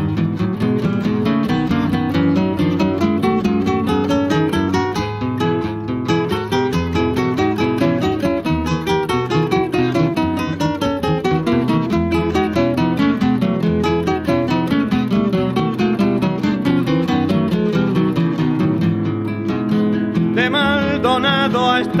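Instrumental interlude of a folk song on acoustic guitar: a busy run of quickly plucked notes over a bass line. A singing voice with vibrato comes back in near the end.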